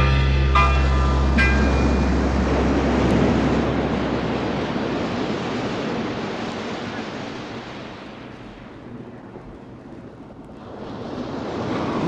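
Ocean surf sound effect: a wash of noise that swells, ebbs away over several seconds, then builds again near the end. The last low notes of the band's music fade out under it in the first few seconds.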